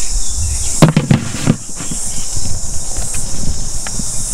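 Steady high-pitched chirring of insects, with a cluster of sharp knocks and thumps about a second in over low rumbling handling noise.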